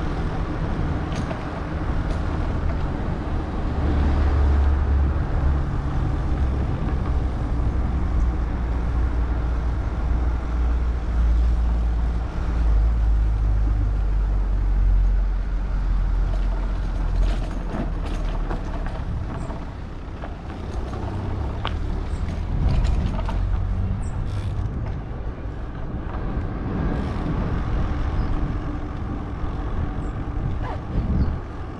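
Motorcycle engine running at low road speed, its note rising and falling a little, with wind rumble on the microphone.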